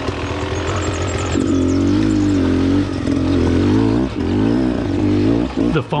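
Beta Xtrainer two-stroke dirt bike engine running at low speed, its pitch rising and falling over and over as the throttle is opened and closed.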